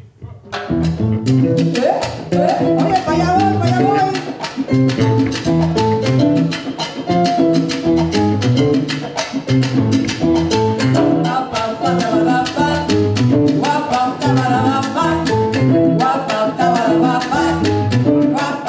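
Latin jazz band playing salsa, starting about half a second in: timbales and congas play a fast, even rhythm over electric bass and keyboard.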